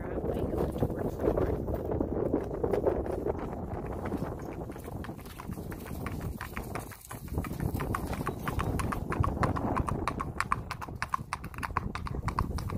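Hoofbeats of a gaited tobiano gelding ridden on a paved driveway: a quick, even clip-clop of shod hooves on hard surface, sharper and clearer from about halfway through.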